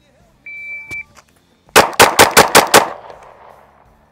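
A shot timer beeps once with a steady high tone. About a second later a Shadow Systems MR920 9mm pistol fires six quick shots, about five a second, the string of a Bill Drill, with echo trailing off after the last shot.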